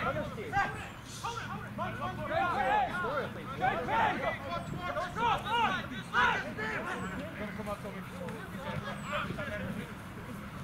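Rugby players shouting short, unintelligible calls to each other across the field, several voices in quick succession.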